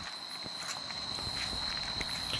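Footsteps of a person walking over grass.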